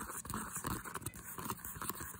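Fingernails tapping and scratching quickly on a faux-leather handbag, a dense run of small, irregular taps.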